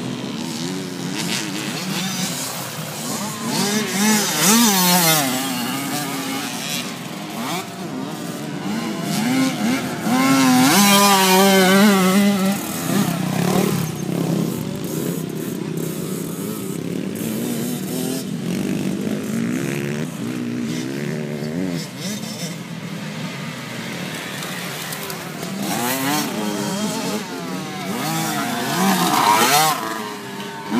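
Motocross dirt bike engines on the track, revving up and down with each throttle change so the pitch keeps rising and falling. They are loudest about four seconds in, for a couple of seconds around eleven seconds, and again near the end.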